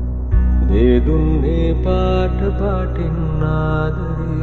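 Music between sung lines of a song: a melody of held and gliding notes over a steady deep bass, entering about a third of a second in.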